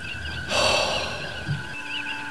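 Starship-bridge sound-effect ambience: a steady electronic hum with repeating warbling beeps. About half a second in, a breathy hiss rises and fades away over about a second.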